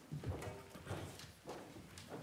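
Irregular footsteps and light knocks, about two a second, as people move about on a hard floor.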